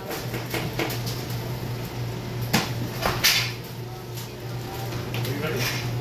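Shop ambience: a steady low hum with indistinct voices, and two sharp knocks or clinks a little past the middle.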